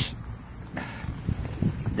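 Low rumble of wind and handling noise on a handheld camera microphone, with a few soft knocks in the second half.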